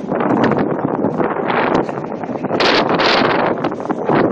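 Wind buffeting the microphone on an open ship's deck at sea, coming in uneven gusts, with the strongest gusts in the second half.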